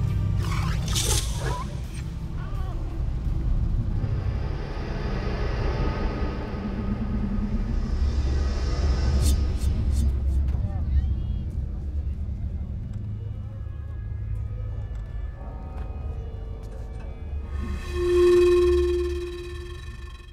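Film soundtrack of street sounds and music: a steady low traffic rumble, with a car passing about a second in. A loud held tone with many overtones swells near the end.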